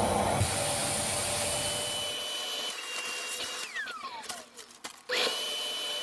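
Vacuum cleaner running with its hose on the valve of a vacuum storage bag, drawing the air out of a packed sail. About three and a half seconds in, the motor winds down with a falling whine. It starts up again about five seconds in.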